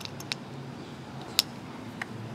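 A few small clicks of capacitor-tester leads being clipped onto the metal terminals of a dual run capacitor, with one sharper click about one and a half seconds in, over a low steady hum.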